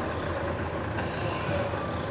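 Steady outdoor background noise with a low rumble, faint and even throughout, with no distinct event standing out.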